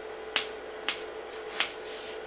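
Chalk tapping against a blackboard while writing: three sharp clicks, roughly half a second apart, over a faint steady hum.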